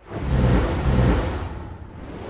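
Sound-design sting for an animated logo outro: a deep swell with low held tones that starts suddenly, is loudest in the first second, then eases off.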